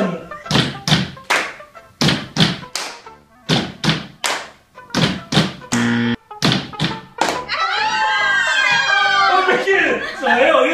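A group of players beating a 'tum tum tá' rhythm with their hands, two slaps and a clap repeated about once a second. A short low buzz sounds about six seconds in, and the beat gives way to laughter and voices.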